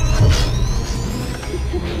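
Proton packs (film sound effect) powering up. It starts suddenly with a deep hum, and a high whine climbs steadily in pitch over it.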